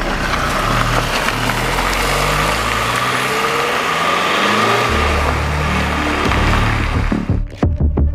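Background music: a dense, noisy track over a bass line that steps from note to note, breaking into sharp, evenly spaced beats near the end.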